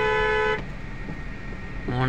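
Car horn heard from inside the car: one steady, held note that cuts off about half a second in. After it, the low hum of the slow-moving car.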